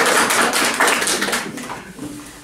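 A small group of people clapping their hands in applause. The clapping thins out and dies away about a second and a half in.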